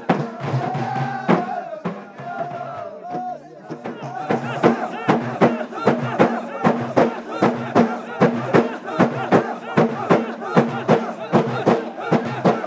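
Ahidus music: a group singing together, then, from about four seconds in, large hand-held frame drums (allun) beaten in a steady beat a little over twice a second under the group singing.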